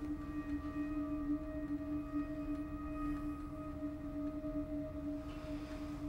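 A steady, sustained drone holding one low pitch with a couple of fainter overtones above it, gently pulsing, over a low rumble.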